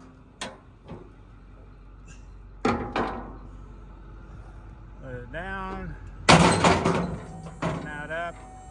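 Steel diamond-plate liftgate platform clanking and banging as it is flipped up and locked into its stowed position: a couple of light clicks near the start, two bangs about three seconds in, and the loudest bang a little past six seconds. The truck's 6.4-litre Power Stroke V8 diesel idles underneath.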